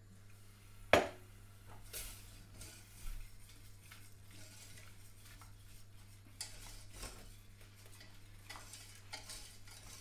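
Wire whisk scraping and clicking against a stainless steel saucepan, working a thick butter-and-flour roux as milk is added a little at a time for a white sauce. There is a sharp knock about a second in, then irregular small scrapes and ticks.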